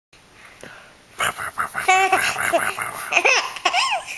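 A young baby laughing: after about a second of quiet, a run of high-pitched laughs and squeals in short bursts, one of them a quick stuttering giggle.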